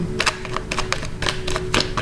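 Oracle cards being shuffled by hand: a run of quick, irregular light clicks and snaps of card edges.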